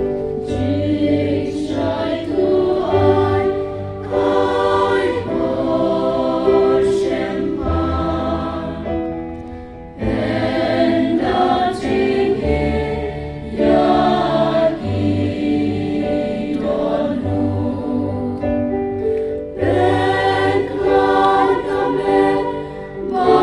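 A group of women's voices singing a hymn together into microphones, with low bass notes held underneath. The music dips and starts again abruptly about halfway through.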